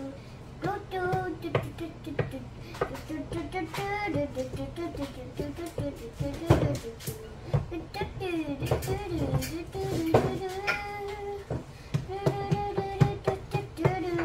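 A voice singing or humming a wordless tune in held and gliding notes, with a few light clicks and knocks through it.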